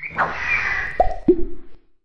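Cartoon sound effects for an animated logo: a swish with a gently falling tone, then two quick downward-dropping plops about a third of a second apart, the second lower in pitch.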